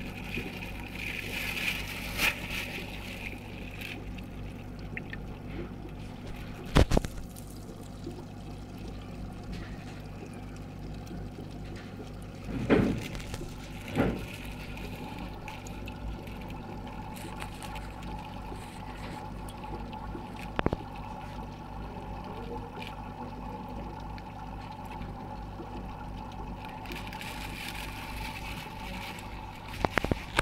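Aquarium water running, with a steady low hum from the tank's equipment. There are a few short knocks, the loudest about seven seconds in and twice more around thirteen to fourteen seconds.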